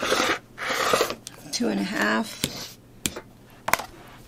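Rotary cutter slicing through pieced cotton fabric along an acrylic ruler on a cutting mat, two rasping strokes in the first second, followed by a few light clicks and knocks as the ruler is handled.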